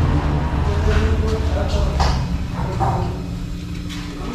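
Faint voices in the background over a steady low hum.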